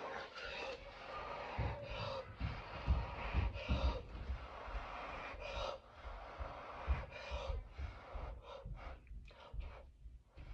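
A person blowing hard by mouth onto wet acrylic pour paint to open it into a bloom: a run of long, forceful breaths out with quick gasping breaths in between.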